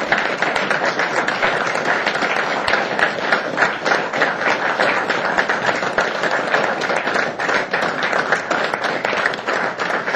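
Audience and council members applauding steadily, many hands clapping together as a standing ovation.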